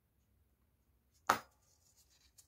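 A single sharp click of metal tweezers about a second in, followed by faint rustling of a foam petal being handled.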